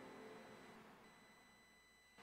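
Near silence: the last of the music dies away in the first half-second. A faint, steady, high-pitched electronic tone stays under it throughout.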